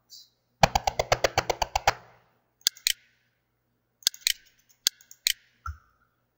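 Computer mouse: a rapid, even run of about a dozen ticks in the first two seconds, then a few single clicks spread through the rest.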